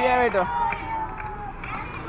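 Voices of people talking and calling out in a street, with a loud voice in the first half-second.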